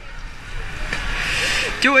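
Water splashing as swimmers kick and stroke through a pool, a steady noisy wash that builds about half a second in.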